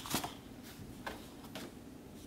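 Large glossy card photo prints being handled: one slid off the stack with a sharp papery swish at the start, then two softer rustles of card later on.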